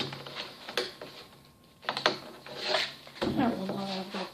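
Handling noise from a toy wrestling championship belt being taken off and laid on a wooden table: a few sharp clicks and knocks with rustling between them.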